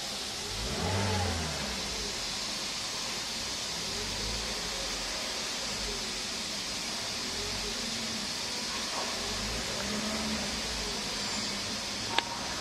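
Daihatsu Sigra 1.2's four-cylinder engine idling steadily in Park, heard from inside the cabin, with a brief swell about a second in.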